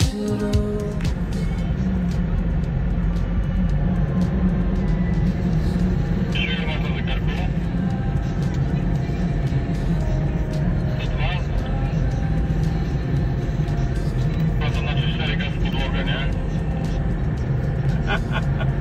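Steady low road and engine rumble inside a car cruising on a highway, with indistinct voices and music mixed in.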